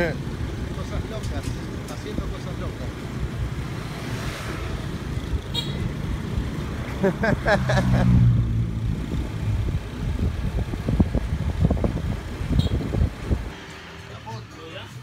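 Motor scooters running along a road, recorded from a moving scooter: a steady engine and wind rumble, with a louder pass of engine hum about eight seconds in. The rumble stops abruptly near the end.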